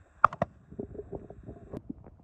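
Irregular clicking and crackling from a rain-soaked camera microphone that is failing, with a quick cluster of sharp clicks about a quarter second in.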